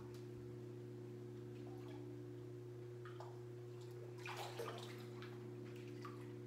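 Pool water sloshing and splashing as a dog in a life jacket paddles while being held, with the loudest splashes a little after the middle, over a steady low hum.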